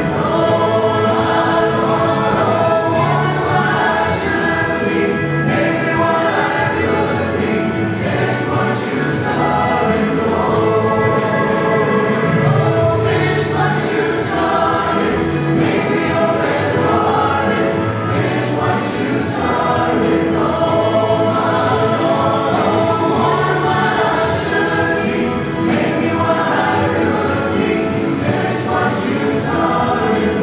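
A small church choir of women's voices singing a sacred song.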